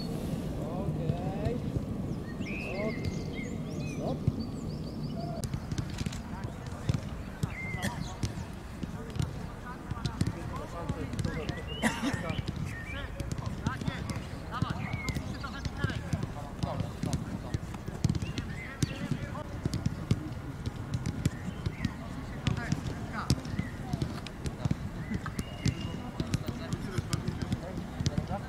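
Football training ambience: irregular thuds of footballs being kicked and struck on artificial turf, with indistinct calls from players and coaches.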